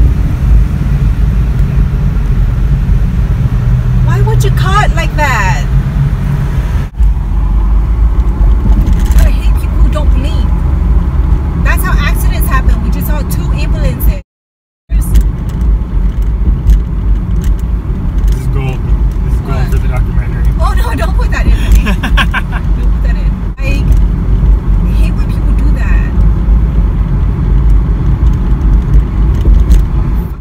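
Steady low rumble of road and engine noise inside a car's cabin at freeway speed, with faint voices now and then. The sound drops out for about half a second halfway through.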